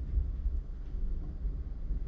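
A low rumble on the microphone, like air or breath blowing across it, with no voice over it.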